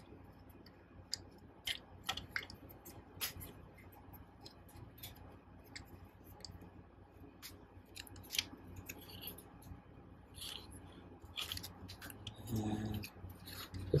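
Plastic parts of a Transformers Studio Series '86 Ultra Magnus figure being handled and moved during transformation: irregular, scattered faint clicks and rattles of hard plastic pieces.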